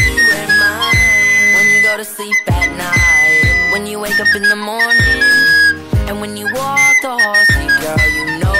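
Recorder playing the song's melody in high, shrill held notes that step and bend from note to note, over a pop backing track with a regular drum beat.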